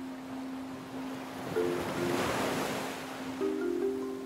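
A wash of ocean surf swelling up and fading away over about two seconds, over soft background music with a held low note and a few short higher notes.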